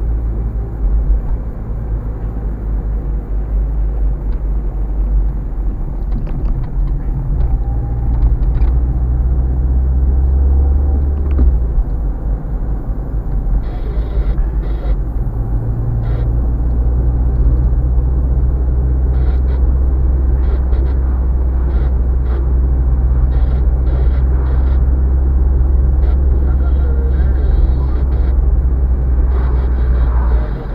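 Steady low engine and road rumble heard from inside a moving car. The drone eases off about eleven seconds in and builds back a few seconds later, with scattered faint ticks and rattles in the second half.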